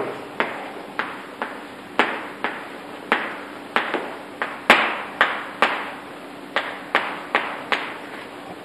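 Chalk writing on a blackboard: a string of sharp, irregular taps, roughly two a second, as letters are stroked onto the board.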